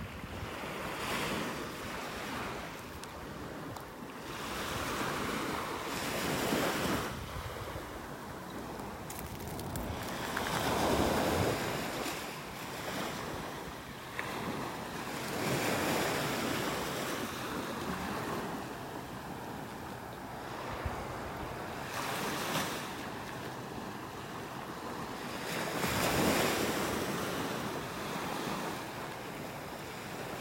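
Small waves breaking at the water's edge and washing up the sand. The surf swells and fades every few seconds.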